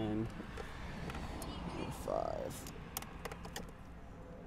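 Small, scattered plastic clicks and rattles of wiring-harness connectors being pushed and pried loose from a plastic electronics box with a small screwdriver.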